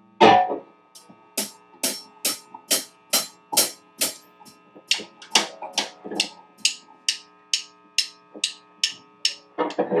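Drum kit: a loud crash hit, then steady cymbal strikes a little over two a second keeping time, over a steady amplifier hum. An electric guitar joins in near the end.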